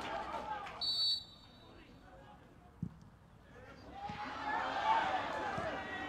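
Live pitch sound of a football match: voices on the field at the start and again in the last two seconds, a short high referee's whistle blast about a second in, and a single dull thump of the ball being kicked near three seconds.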